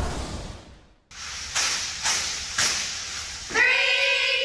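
Intro music fades out in the first second, then after a short gap there is hissy room sound with a few sharp hits. Near the end a cheerleading squad starts a loud chant in unison, echoing in a gym.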